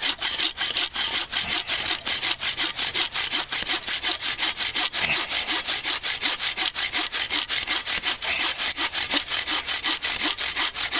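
A hand saw cutting through a green, pale-barked branch in rapid, even back-and-forth strokes, a steady rhythmic rasp of teeth in wood.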